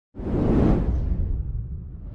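Cinematic whoosh sound effect over a deep rumble, coming in suddenly just after the start and sweeping downward as it fades.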